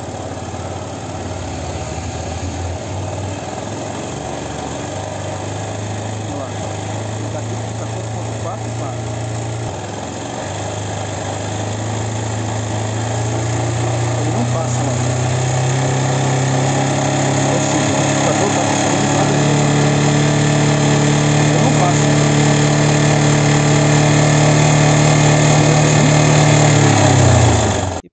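Motorcycle engine running and being revved up in stages: its note climbs in pitch and loudness through the first half, holds at high revs, then cuts off suddenly at the end. The engine is held at high rpm to check that the charging voltage at the battery stays below 14.4 V.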